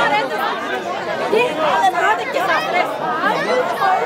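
Several people talking at once: lively, overlapping chatter from a group of voices.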